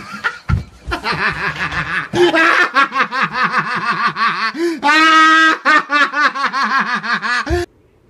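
A person laughing hard, in long runs of quick, rhythmic bursts with one longer held note in the middle; it cuts off abruptly near the end.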